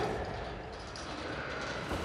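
Low, even background noise of a gym after the punching stops, with no bag strikes or clear impacts.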